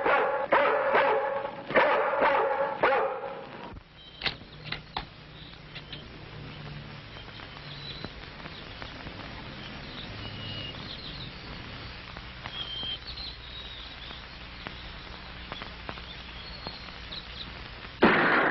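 A dog barking over and over for the first few seconds, then a low steady hum with a few faint high chirps.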